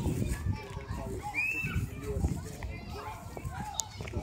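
Children's voices playing and calling out at a distance, a jumble of overlapping chatter with one higher call about a second and a half in.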